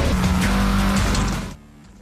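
News bulletin intro music with a rushing whoosh effect, which fades out about one and a half seconds in.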